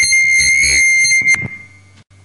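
Public-address microphone feedback: a loud, steady high-pitched squeal that cuts off suddenly about one and a half seconds in. After it a faint low hum from the sound system remains.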